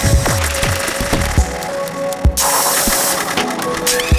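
Live electronic music from a Eurorack modular synthesizer system and a Yamaha MODX synthesizer. A steady held tone runs under irregular, glitchy percussive hits, several of them dropping quickly in pitch like synthesized kick drums. A burst of hissing noise comes a little past halfway.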